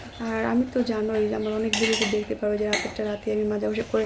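Stainless steel pots, plates and bowls clinking and scraping against each other as they are scrubbed by hand, with sharp clanks about two seconds in and again a little later. A voice-like pitched sound runs underneath.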